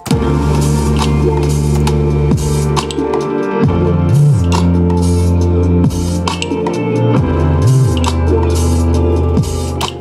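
Electronic beat playing, led by a deep synth bass from Output's SUBSTANCE plugin. The bass holds low notes and slides up and back down between them with portamento, twice, over a drum pattern.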